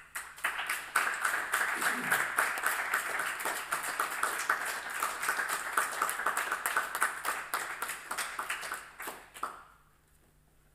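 Applause from a small audience, with individual hand claps audible, starting at once and dying away just before the end.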